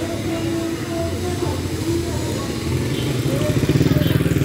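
Small motorcycle engine running and drawing closer, growing louder near the end, over a faint voice and music.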